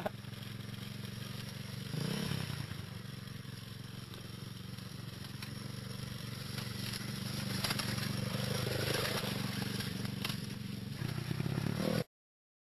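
Small motorcycle engine running at a steady pitch, getting louder about two seconds in and again near the end.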